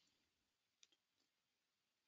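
Near silence, with one faint click a little under a second in.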